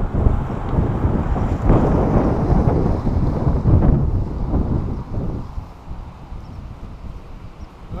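Strong gusty wind blowing across the microphone, loud at first and easing off after about five seconds.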